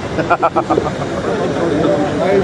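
Su-22 fighter jet's engine at a distance, a steady noise under the talk of nearby spectators.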